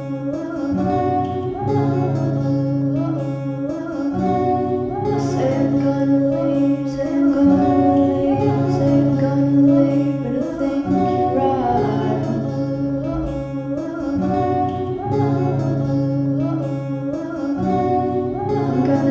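Acoustic music: a plucked acoustic guitar playing a chord pattern that repeats about every three seconds, with a melody line over it.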